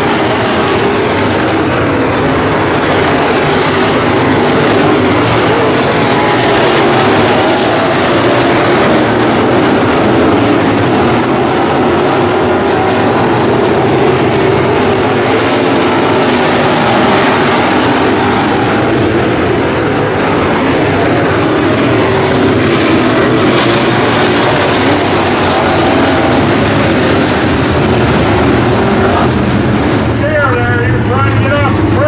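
A field of dirt-track Modified race cars with V8 engines running at racing speed around the oval. Their engines blend into one loud, steady sound that holds without a break.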